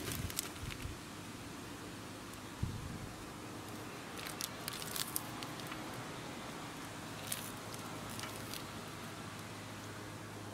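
Quiet, steady low background hum, with a soft thump about two and a half seconds in and a few faint clicks.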